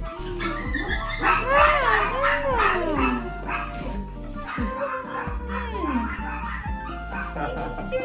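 Shih Tzu puppy whining and yipping, mixed with excited human voices, over background music. Several drawn-out calls rise and fall in pitch, in two groups about a second and a half in and again near the middle.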